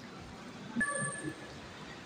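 Soft footsteps on a tiled walkway over a steady urban background hum. A brief high tone sounds about a second in.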